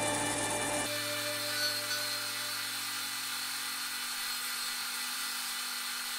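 Bench disc sander running with a steady motor hum and hiss as a small epoxy-resin-and-wood pendant is pressed against the abrasive disc. Music plays for about the first second, then stops.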